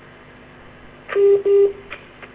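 Telephone line tone coming through a phone-in call: two short beeps at the same steady pitch, back to back, about a second in.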